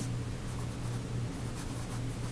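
Pencil writing on a paper worksheet, the graphite tip scratching softly in short strokes over a low steady hum.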